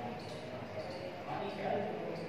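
Felt-tip marker writing on a whiteboard: faint, short strokes and taps.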